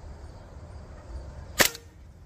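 A single shot from a Hatsan Invader Auto .22 PCP air rifle, fired unsuppressed, about three quarters of the way through: one sharp report.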